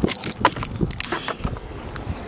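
A run of sharp plastic and metal clicks and rattles from a car roof ski rack as a snowboard is unlocked, unclamped and lifted out of it. The loudest knocks come right at the start and about half a second in.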